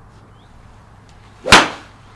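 Golf iron swung through the ball on a driving-range hitting mat: a short swish building into one sharp strike about one and a half seconds in.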